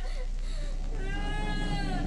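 A young girl crying: a brief sob, then one long high-pitched wail in the second half, over a low steady rumble.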